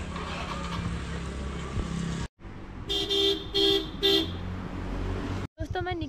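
A vehicle horn sounds three short toots about half a second apart in the middle, over a steady low engine and traffic hum.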